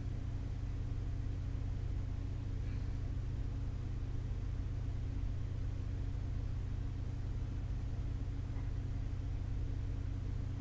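Steady low hum with a faint hiss, unchanging throughout: room background noise.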